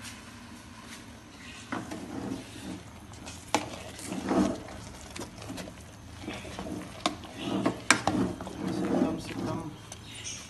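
A metal ladle stirring thick, sticky rice in an aluminium pressure-cooker pot, scraping through the mash with a few sharp knocks against the pot's rim.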